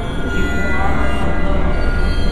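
Dark ambient music: a steady low drone under several long held higher tones.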